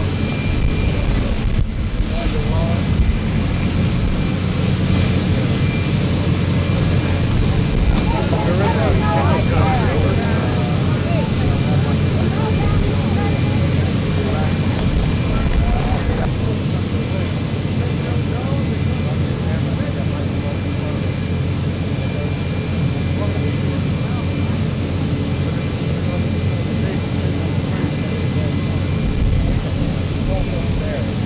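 Steady drone of aircraft engines running, with the mixed chatter of a crowd over it.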